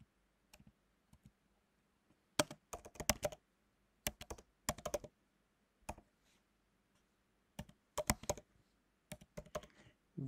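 Typing on a computer keyboard: short runs of keystrokes in several bursts with brief pauses between them, starting after a couple of nearly quiet seconds.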